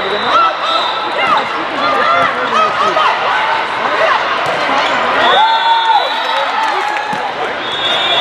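Indoor volleyball play in a busy hall: players calling out and shouting over a din of crowd voices, with short knocks of the ball being hit and bouncing.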